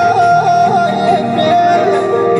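Live devotional folk music led by a harmonium: a loud, steady melody with quick, evenly repeating ornaments over a held lower drone.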